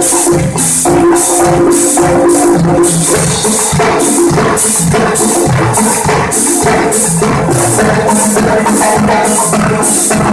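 Percussion ensemble with tuba playing a Latin-style groove: congas and hand percussion keep a steady beat with regular high strokes about twice a second, under a marimba melody and a tuba bass line.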